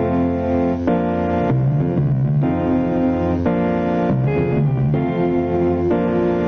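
Instrumental band music: sustained organ-like keyboard chords over electric bass guitar, the chord changing about once a second.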